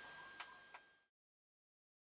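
Near silence: faint room hiss with a thin steady high tone and two small clicks about a third of a second apart, then the sound cuts off to total silence about a second in.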